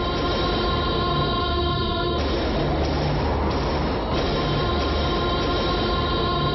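Film background score: held synthesizer chords that shift about two and four seconds in, over a low, evenly pulsing bass.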